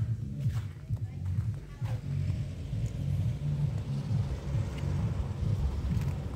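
Low, uneven outdoor rumble with a few footsteps on paving in the first two seconds.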